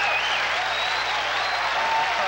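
Studio audience applauding steadily, with faint voices over it.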